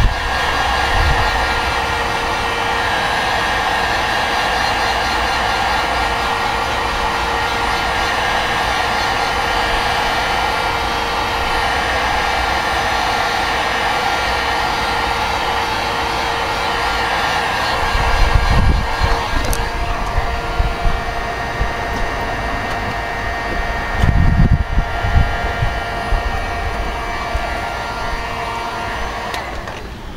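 1500-watt heat gun running on high: a steady fan-and-blower whine with several fixed tones, shutting off near the end. Two brief low rumbles come about two-thirds of the way through.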